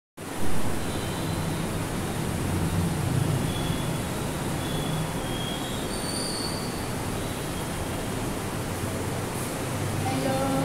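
A steady rushing background noise with a low hum underneath. It starts abruptly as the recording begins, with a brief louder bump about half a second in.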